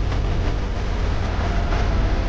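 A steady, low rumbling noise with a faint tone above it, from the soundtrack of a film clip.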